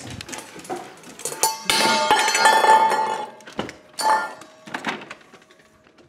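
A stainless steel dog bowl is dropped and clatters, then rings for over a second, with a second shorter clang about two seconds later. It was not dropped without a noise.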